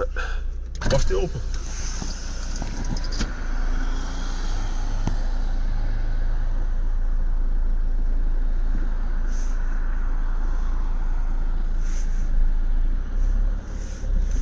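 Steady low rumble of a car's engine and road noise, heard from inside the car's cabin while it drives.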